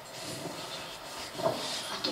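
Steady low hiss of theatre room noise between lines, with one short, faint sound about one and a half seconds in.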